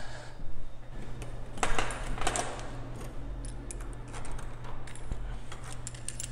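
A bunch of keys jangling and clicking against a door lock as a key is fitted, in scattered bursts, the busiest about two seconds in, over a steady low hum.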